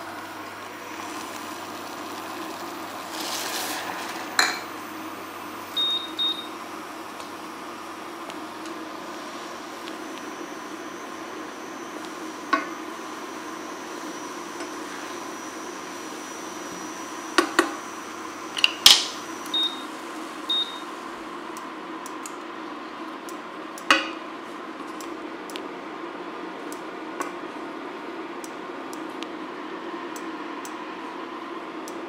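A wooden spoon stirring and knocking against a stainless steel saucepan of barley flakes on an induction hob, over the hob's steady hum. Two pairs of short high beeps from the hob's touch controls, about six seconds in and again near twenty seconds, and light rapid ticking in the last third.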